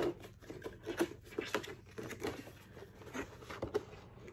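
Handling noise: irregular light clicks, taps and rustles of cardboard and plastic packaging as a boxed Funko Pop in a clear plastic protector is picked up and lifted out.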